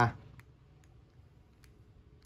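A few faint, sharp clicks from a red four-dial combination U-lock being worked with the wrong code set. The release button is pressed and the shackle stays locked.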